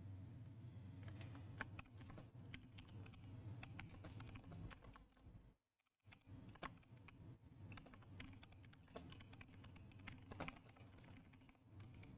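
Faint typing on a computer keyboard: irregular key clicks over a low steady hum. The sound cuts out completely for about half a second midway.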